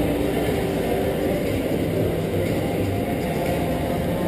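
Steady low rumbling ambience of a large indoor shopping mall hall, with no clear single event.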